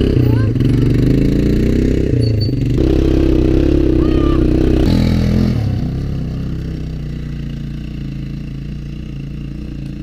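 Quad bike engine revving as it pulls away, its pitch rising and falling with the throttle, then fading steadily over the second half as it drives off into the distance.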